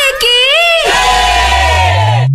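Song intro: a voice shouting, then about a second in a crowd shouting together in one long held cry, with a low electronic tone rising under it.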